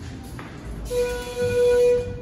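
Schindler traction elevator's electronic chime: one steady, held tone of about a second, starting about halfway in and cutting off sharply.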